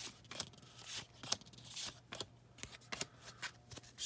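Baseball trading cards being slid one past another by hand through a stack, making quiet card-on-card swishes and light ticks at an irregular pace.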